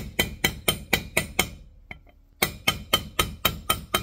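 Hammer tapping lightly on a metal bearing driver, about four taps a second in two runs with a short pause near the middle, each tap ringing. It is driving a freezer-chilled bearing into the heated bore of a Scag Tiger Cat mower deck idler arm, a shrink fit.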